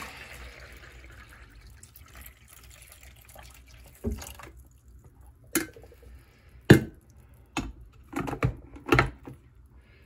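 Water poured into the reservoir of a Mr. Coffee 12-cup drip coffee maker, the splashing fading away over the first four seconds. Then a string of sharp knocks and clunks as the machine and carafe are handled, the loudest a little past the middle.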